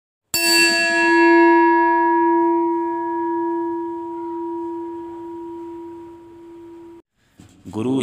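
A bell struck once, ringing out with a clear, lingering tone that slowly fades and then cuts off abruptly about seven seconds in.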